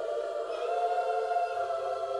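Intro music of a choir singing long held chords, the chord moving up a step about half a second in.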